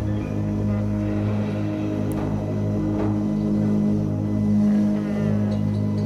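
Live band music built on a steady, unbroken low didgeridoo drone, with sustained tones layered above it.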